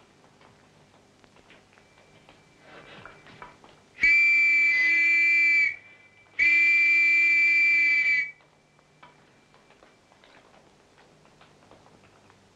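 Two long, steady blasts on a hand-held signal whistle, about four and six seconds in, with a short break between them. The whistle is blown by a caver alone underground to signal to his absent instructor.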